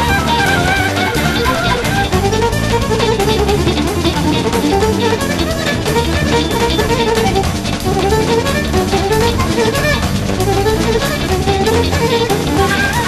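Bulgarian folk instrumental band music: guitar, bass and drums under a melody line that glides up and down.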